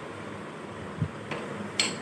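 Glass bowls being handled on a tabletop: a soft knock about a second in and a short sharp clink of glass near the end.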